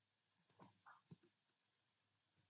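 Near silence with a few faint computer mouse clicks about half a second to a second in.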